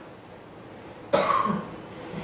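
A man coughs once, a short sharp cough about a second in.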